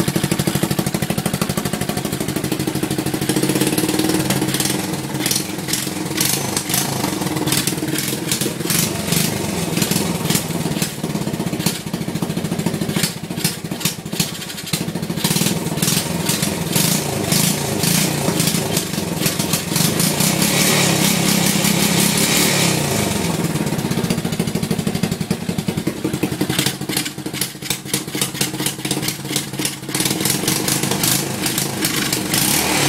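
2007 off-brand 125cc ATV's single-cylinder four-stroke engine running loudly, its revs rising and falling, with a higher-revving stretch about two-thirds of the way in. It is loud because the exhaust clamp has fallen off and the exhaust is loose.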